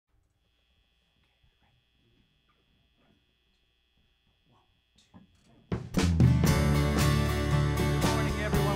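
A faint steady high tone over near silence, then, almost six seconds in, a live church band starts playing loudly with drum kit and guitar.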